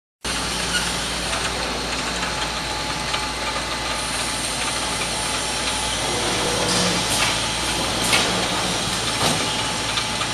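Automatic carton packing machine running, a steady mechanical hum with a constant hiss. Several sharp clicks and knocks from its mechanism come in the second half.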